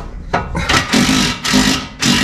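A power tool run in short repeated bursts of about half a second each, starting about half a second in.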